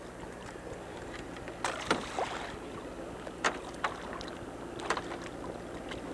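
Boat engine idling steadily, with a few short splashes of water.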